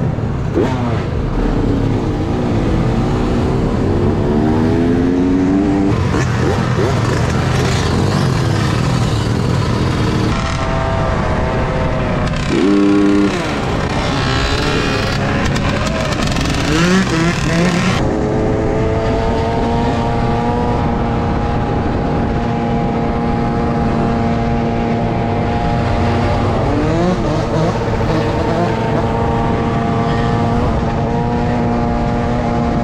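Dirt bike engines running and revving during a street ride, the revs rising and falling in the first half. A brief louder tone sounds about thirteen seconds in, and from about nineteen seconds a bike holds a steady engine note.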